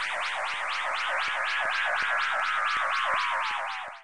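Synthesized warbling sound effect for a 'time machine' transition: an even wobble of about four to five swoops a second over a tone that slowly falls in pitch, cutting off abruptly near the end.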